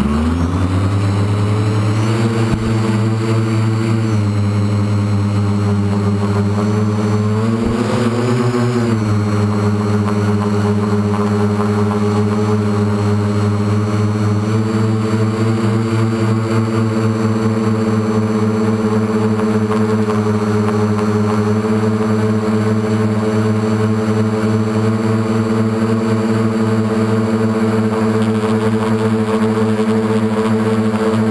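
A model aircraft's motor and propeller spinning up from rest, then running at a steady pitch, with a short rise in pitch about eight seconds in, as the aircraft lifts off and climbs.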